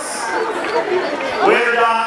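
Crowd chatter: several voices talking over one another, with no single clear speaker.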